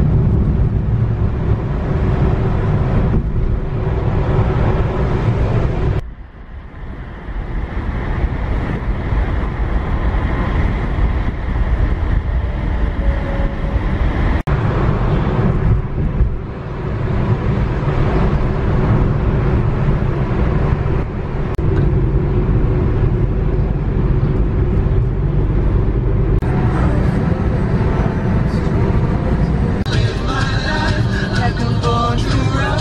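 Car cabin road noise: the engine and tyres run steadily at road speed, heard from inside the car. The rumble drops off and changes suddenly a few times, most deeply about six seconds in.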